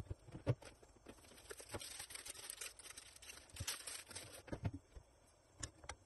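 Stainless steel frying pan heating empty on a gas burner, giving a scattered series of sharp ticks and clicks. A faint hiss comes in about a second in and fades out near the end.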